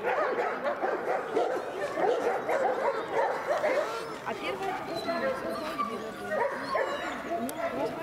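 Dogs yipping and whining over people talking in the background, a dense run of short, wavering cries.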